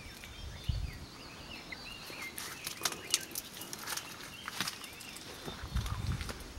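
Outdoor ambience with many small bird chirps and twitters, and a scattering of sharp clicks about two to five seconds in, plus a couple of low thumps.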